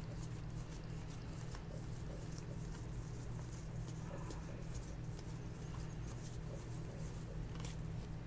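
Baseball trading cards being flipped through by hand, each card sliding off the stack with a soft, papery flick, several a second and irregular, over a steady low hum.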